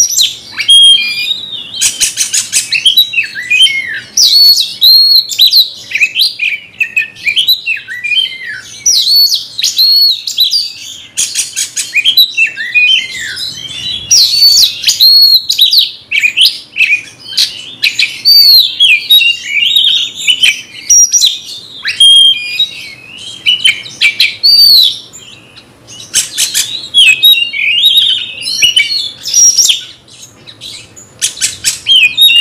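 Oriental magpie-robin (kacer) singing continuously and loudly: a varied stream of clear whistled phrases, sliding notes and rapid harsh chattering, with a brief lull near the end. It is the agitated, challenging song that keepers call 'ngamuk', delivered as a fighting bird answers a rival.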